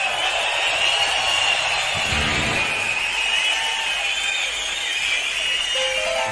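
Large concert crowd cheering and whistling, a steady roar with many shrill whistles over it.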